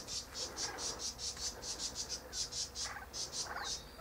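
An insect chirping in a steady, even, high-pitched pulse, about five chirps a second, with a couple of faint short sounds near the end.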